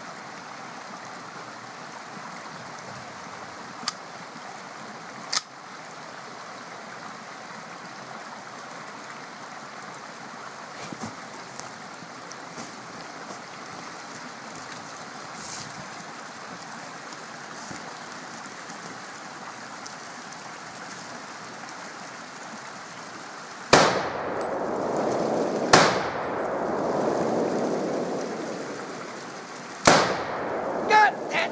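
Steady rush of a small mountain stream, then two rifle shots about two seconds apart near the end, followed by a rumble that fades away over a few seconds.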